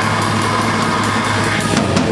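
Extreme metal band playing live, loud and dense: a drum kit hit in a steady rhythm over a low, sustained band sound.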